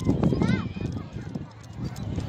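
Children's voices at a playground, with one short high-pitched call about half a second in, over low rumbling wind buffeting on the phone microphone.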